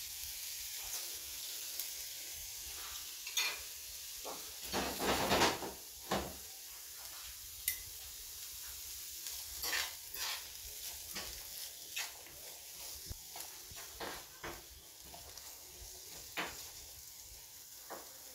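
Diced onions sizzling in olive oil in a nonstick frying pan, with scattered scrapes and taps of a spoon stirring them. The stirring noise is loudest about five seconds in.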